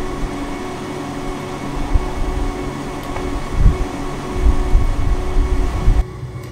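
Parked double-decker tour coach running with a steady droning hum, over uneven low rumbling that swells in the second half.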